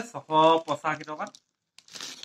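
A voice speaking, then near the end a brief crinkle of a diaper pack's plastic wrapping as a hand pulls at it.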